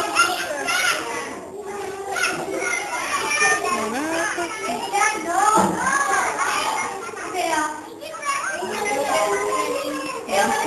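Many young children's voices chattering and calling out at once, with overlapping high-pitched talk filling the room.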